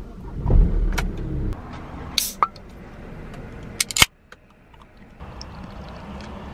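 A car engine starts with a low rumble in the first second and a half and settles to a steady idle heard from inside the cabin. Just after two seconds a drink can is cracked open with a short hiss, and there are a few sharp clicks near four seconds.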